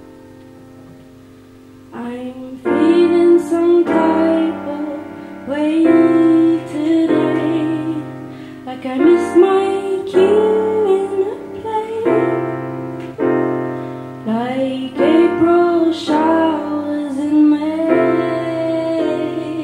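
A woman singing to her own grand piano accompaniment. A held piano chord rings alone at first, and her voice comes in about two seconds in and carries the melody over the piano from then on.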